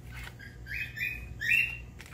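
A bird chirping: about three short high chirps within a second or so.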